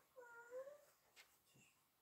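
Near silence with a faint, short, high-pitched cry about half a second in, its pitch arching up and down.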